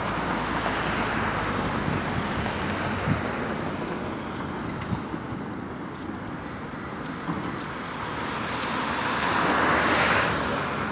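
Steady street traffic noise that swells near the end as a vehicle passes, with a few light knocks along the way.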